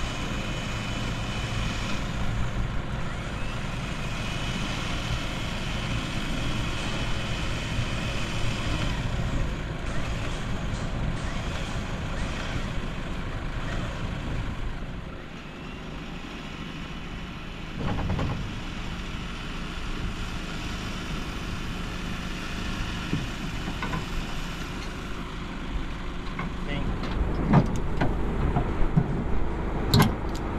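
Truck-mounted boat loader running as it lowers a boat from the truck's roof rack down to the ramp: a steady motor whine over a low rumble. Several knocks and clatters come near the end.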